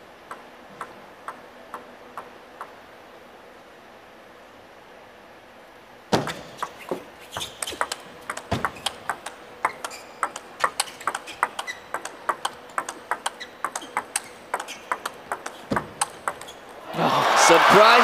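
A table tennis ball bounces five times on the table before the serve. A rally follows, with about ten seconds of sharp ball clicks off rubber paddles and the table, two or three a second, and a couple of low thumps. As the rally ends, near the end, a crowd cheers and shouts loudly.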